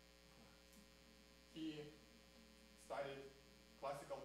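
Steady low electrical mains hum in the sound system during a pause in speech, with a man's voice breaking in briefly about one and a half and three seconds in.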